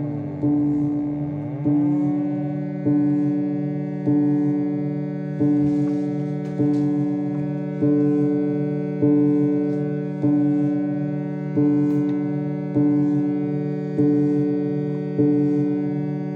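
Experimental electronic instrument patched with iron wire, playing a looping pattern of synthesized notes, one about every 1.2 seconds, each fading before the next, over a steady low drone. In the first couple of seconds the pitches bend before the loop settles.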